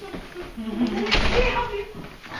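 A person's voice calling out in a drawn-out, wordless way, with a short knock about a second in.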